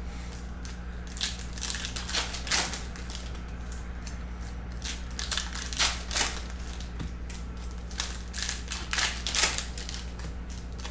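Foil wrappers of Upper Deck SP Authentic Hockey packs crinkling in irregular bursts as the packs are picked up and handled, over a low steady hum.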